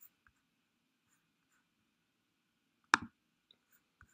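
A single sharp computer mouse click about three seconds in, followed at once by a softer release click, against faint room noise.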